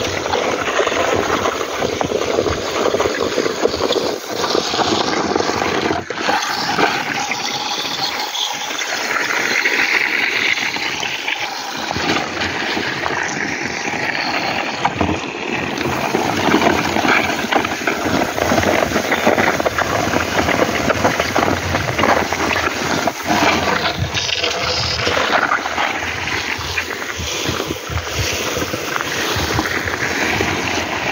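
Sun-dried shelled corn kernels being pushed across a concrete drying floor with wooden pushers: a steady rushing, rattling hiss of grain sliding and scraping over the concrete.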